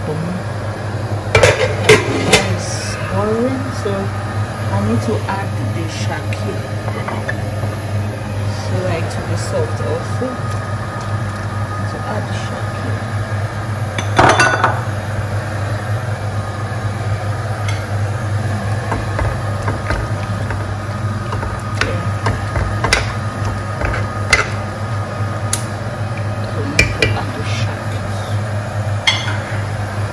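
Metal pot lid and utensils clinking against a cooking pot of boiling meat, a few sharp clinks scattered through, the loudest about two seconds in and again near the middle, over a steady low hum.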